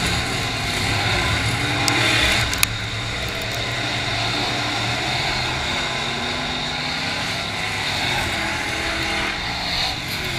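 Dirt late model race car engines running at speed around the oval, a steady drone of several cars on track that swells near the end as a car comes through the turn toward the microphone. A single sharp click about two and a half seconds in.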